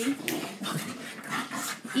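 Pet dogs fighting: a run of irregular, rough, noisy bursts of dog sound.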